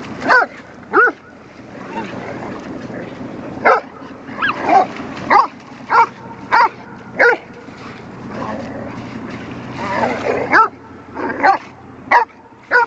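Dogs barking in play, a goldendoodle and a schnauzer: about a dozen short barks at uneven intervals.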